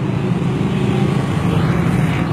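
A motor vehicle's engine running steadily under way, a constant low drone with road noise over it.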